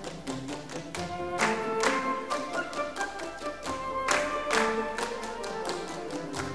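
Orchestral zarzuela music, with strings carrying the melody over sharp percussive strikes that come about once or twice a second.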